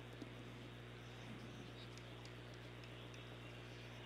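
Near silence: a low steady hum and faint hiss, with a few faint ticks.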